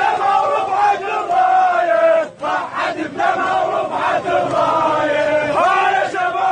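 A large crowd chanting slogans in unison, each line held long, with short breaks about two seconds in and again near the end.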